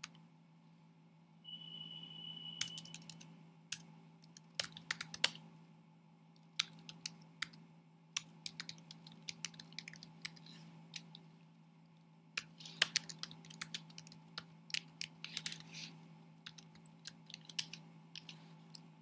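Computer keyboard keystrokes typing in quick irregular bursts with short pauses between, over a steady low hum.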